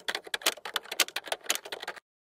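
Typing sound effect: a quick, irregular run of key clicks, about eight to ten a second, as text types out on screen.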